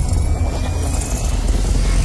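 Cinematic logo-intro sound effect: a loud, steady deep rumble with a faint thin tone gliding slowly upward.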